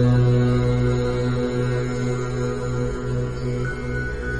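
Devotional mantra music: a steady, low, held drone with many overtones that slowly gets quieter.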